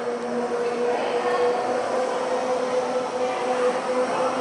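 Waltzer-type spinning barrel ride running: a steady rolling rumble of the cars on the tilted platform, with a constant hum underneath.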